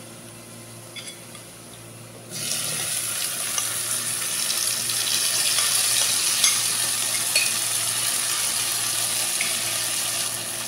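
Onions frying faintly in ghee and oil, then about two seconds in a loud, steady sizzle with small crackles starts as the wet marinated mix of tomatoes, yogurt, spices and potatoes goes into the hot fat.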